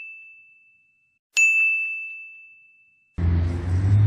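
Bell-like ding sound effect: a single high, pure ring struck about a second and a half in, dying away over a second and a half, after the fading tail of an earlier ding. A low steady rumble comes in near the end.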